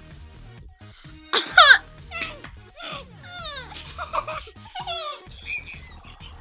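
Children's high-pitched squeals and falling cries in reaction to the sourness of Warheads candy, loudest about a second and a half in, with several more cries after. Background music plays underneath.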